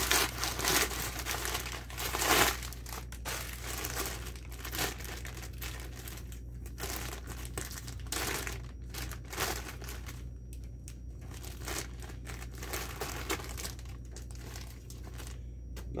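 Brown packing paper rustling and crumpling as it is unwrapped by hand, followed by a clear plastic bag crinkling. The irregular crackles are loudest and densest in the first few seconds and thin out after that.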